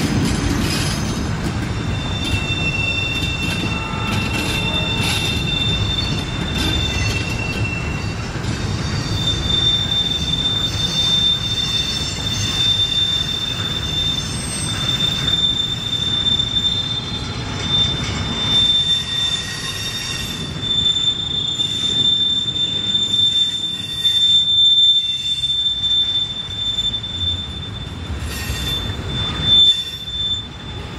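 Double-stack container cars of a Norfolk Southern intermodal freight train rolling around a sharp curve, their wheel flanges squealing against the rail in a high, steady whine that starts about two seconds in, over the low rumble of the wheels on the track.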